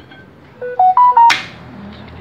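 A short electronic jingle of four clean beeps, stepping up in pitch, then a sharp knock about a second and a half in.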